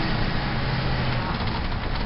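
Shuttle bus driving, heard from inside the cabin: steady engine and road noise with a low engine hum.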